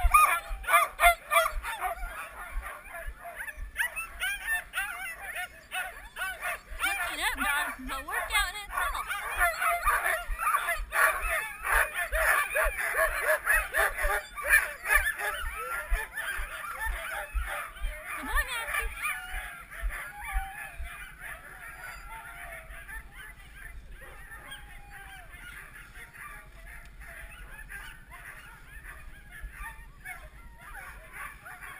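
A team of Siberian huskies, eager to run while being hooked up to the gangline, barking, yelping and howling together in a loud chorus that dies down after about twenty seconds.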